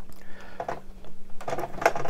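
Plastic toy-brick gear train clicking and knocking irregularly as a small gear wheel is turned by hand to crank a model elevator. The gears are fitted tightly, so the mechanism turns stiffly.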